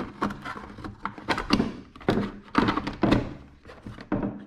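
Hard plastic knocks and thunks, several sharp ones spread over a few seconds, as a battery pack is pressed into the body of a Cuta-Copter Trident 5000 fishing drone and its battery cover is fitted and pushed down.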